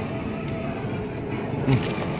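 Steady background noise with faint music, and a short murmured "mm" near the end.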